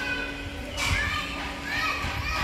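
Background voices of other visitors, mostly high children's voices calling and chattering, with a few short, high calls in the second half.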